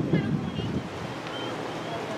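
Wind buffeting the camera microphone in gusts for the first second or so, then settling into a steady rushing hiss, with faint short high chirps over it.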